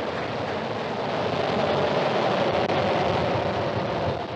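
Falcon 9 first stage's nine Merlin engines during ascent, heard from the ground as a steady, crackling rumble that grows slightly louder about a second in.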